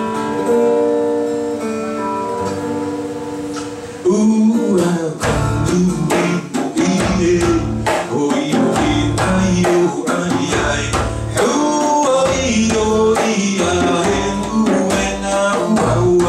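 Live acoustic guitar with a man singing long held notes. About four seconds in, hand drumming on a djembe comes in with a steady rhythm of deep bass strokes and sharp slaps, under strummed guitar and singing.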